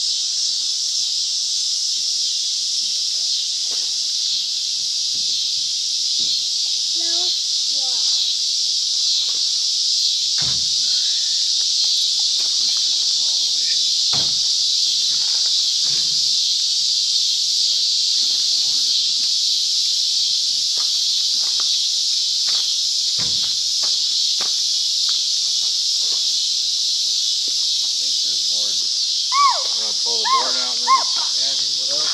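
A steady chorus of insects, a dense, high, unbroken buzz. A few faint knocks sound now and then, with a brief voice right at the end.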